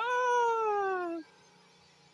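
A woman's long, drawn-out vocal sound, sliding steadily down in pitch for just over a second, in the wake of her laughter.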